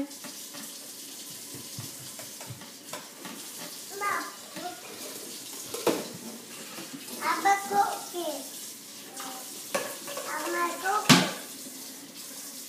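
Toddlers babbling in short bursts while handling a plastic toy coffee maker and its pot, with sharp plastic clacks about halfway through and again near the end, the later one loudest, over a steady hiss.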